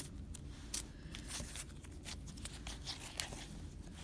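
Red butter slime being poked, stretched and folded by hand, giving a scatter of soft, irregular clicks and crackles.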